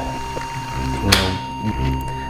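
A steady electronic alarm tone, a single pitch like a patient monitor's, holds over a low hum. About a second in there is a brief rustling scrape as a spring clamp is handled.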